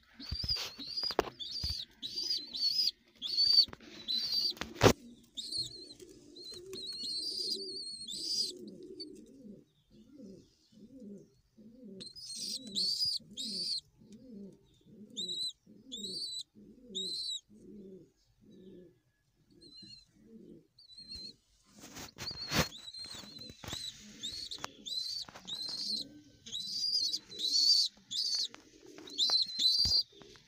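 Domestic pigeons cooing, a long run of low repeated coos at about one and a half a second, strongest through the middle. High chirping calls come in groups at the start, around the middle and through the last third, with a few sharp knocks, the loudest about five seconds in.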